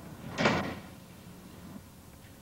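A single sudden thud about half a second in, dying away within a few tenths of a second.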